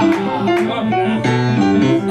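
Grand piano playing an accompaniment: a bouncing, repeated bass-note figure under chords and a melody line.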